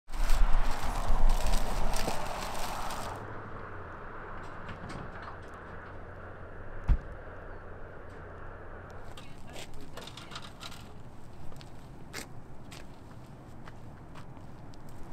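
Outdoor background noise, loud with a deep rumble for the first three seconds and then settling to a quieter hiss with a low hum. There is a single thump about seven seconds in, and scattered light clicks and knocks from about nine seconds on, the handling sounds of people working on equipment.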